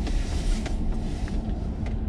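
Steady low rumble of a car idling, heard from inside the cabin with the side window open, with a few faint clicks.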